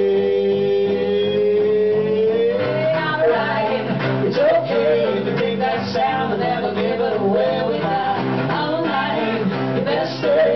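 A live band plays a country-tinged song: male and female voices with electric and acoustic string instruments. A long held note fills the first couple of seconds, then a wavering melody runs over strummed guitar and stepping low notes.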